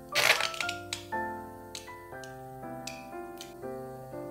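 Ketchup squeezed from a squeeze bottle into a small glass bowl in one short spluttering burst near the start, followed by a few light clicks, over soft background piano music.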